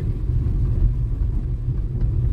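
Steady low rumble of a car driving along a street.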